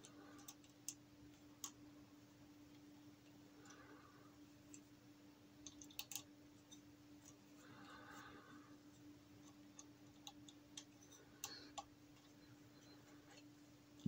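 Near silence over a faint steady hum, broken by a few faint clicks and taps of small metal parts being handled as a metal timing pulley and belt are fitted to a stepper motor bracket.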